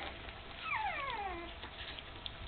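A young puppy whimpering: one high-pitched cry that starts about half a second in and slides down in pitch over about a second.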